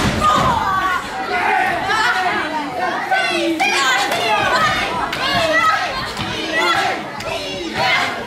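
Audience of children and adults shouting and calling out in a hall during a wrestling match, with a thud of a body hitting the ring right at the start.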